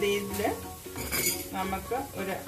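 Kitchen utensils clinking and scraping against a non-stick frying pan of fenugreek leaves, with a few sharp clinks, one about a second and a quarter in.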